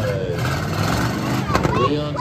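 Indistinct voices talking over a low, steady rumble.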